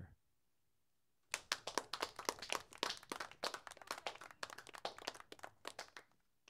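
Small audience clapping, starting about a second in. The individual claps stand out, and the applause thins out near the end.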